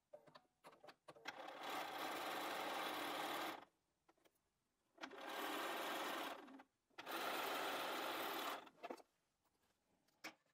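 Sewing machine stitching fabric strips together in three steady runs: a longer one of about two and a half seconds starting about a second in, then two shorter runs of about a second and a half each, with brief pauses and small handling clicks between.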